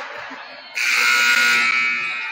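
Gym scoreboard horn sounding as the game clock runs out, ending the period: a loud buzzing blare that starts sharply under a second in and holds steady.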